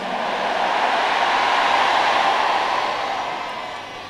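Large congregation cheering and applauding together. The mass of voices and clapping swells for about two seconds, then fades away.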